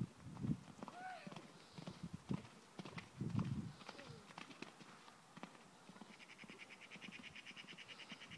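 Faint hoofbeats of a pony cantering on a sand arena floor.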